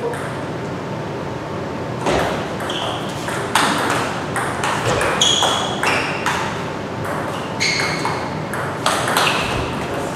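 Table tennis rally: the ball clicking off rubber-faced paddles and bouncing on the table, a few sharp clicks a second, starting about two seconds in and running to near the end.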